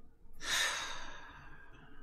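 A long audible sigh, one breath out that starts about half a second in and fades away over the next second or so, from someone composing herself after tearing up.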